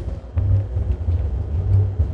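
A pause in studio talk with no speech, filled by a low, uneven rumble that swells and dips.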